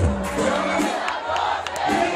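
Party crowd singing and shouting along over loud DJ dance music. The bass beat drops out after the first kick and comes back right at the end, leaving the crowd's voices out in front.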